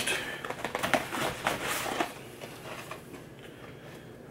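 Cardboard box of PUR water filters being opened and handled: crinkling, clicking rustles, busiest in the first two seconds and then quieter.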